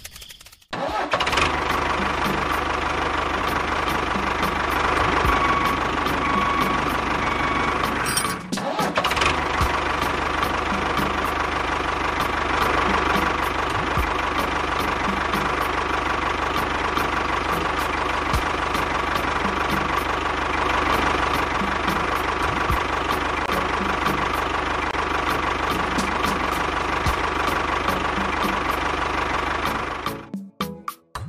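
A tractor engine starting just under a second in and then running steadily, with a brief break about eight seconds in.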